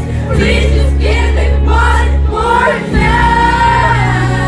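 Live amplified pop song: female lead vocal sung into a handheld microphone, with backing vocal harmonies, acoustic guitar and sustained low chords that change twice. A long held sung note comes near the end.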